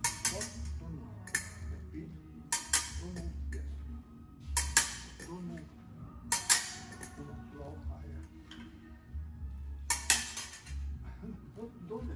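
Steel épée blades clashing in quick parries and beats, sharp metallic clinks with a short ring, coming several times at irregular intervals and pausing for a few seconds in the second half.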